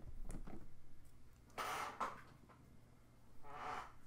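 Faint clicks of plastic Rubik's Magic tiles being handled on a table, then a short soft hiss about one and a half seconds in and another near the end.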